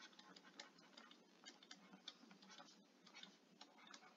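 Faint, irregular light ticks of a stylus tapping on a tablet screen while handwriting, over near silence.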